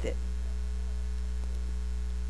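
Steady low electrical mains hum picked up through the sound system.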